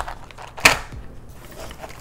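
A single sharp plastic clack about two-thirds of a second in, with a few faint clicks around it, as packs of AA and AAA batteries are handled.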